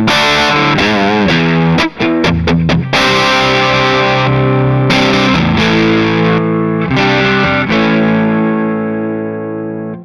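Electric guitar, a Smitty Coffeecaster with amber P90 pickups, played through a BearFoot Sea Blue EQ treble/bass booster with its treble turned up, into a Palmer DREI valve amp. Short strummed chord stabs for the first few seconds, then longer chords left to ring, the last one fading near the end.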